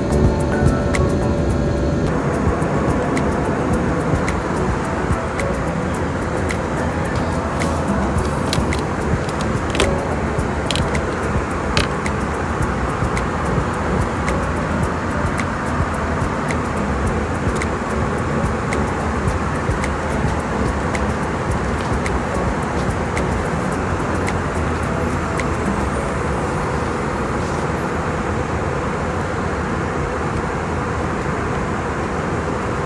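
Steady roar of an Airbus A321 cabin in flight, engine and airflow noise, with a few light clicks about a third of the way in. Background music fades out about two seconds in.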